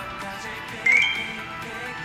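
Background music with a short high electronic beep about a second in that steps up in pitch: a phone's incoming-message alert.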